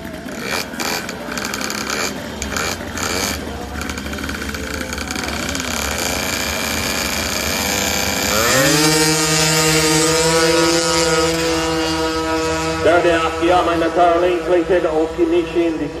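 Two-stroke drag-racing scooter launching at full throttle: about halfway through its engine note rises sharply, then holds at one high pitch with a slight climb, revs held near peak by the scooter's variator while it accelerates. Before the launch there are voices and general event noise.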